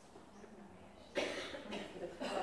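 A person coughing, two sudden coughs about a second in.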